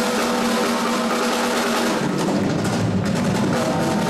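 Live rock band playing, the drum kit to the fore with dense snare, tom and cymbal strokes over held notes from the rest of the band, leading into a drum solo.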